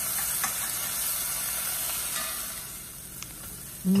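Chopped aromatics sizzling in hot oil in a metal pot, stirred with a metal spoon that clicks lightly against the pot now and then. The sizzle drops off a little near the end.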